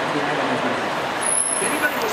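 Street traffic and the sightseeing bus running, heard from the bus's open top deck as a steady drone, with a thin high-pitched squeal for under a second just past the middle.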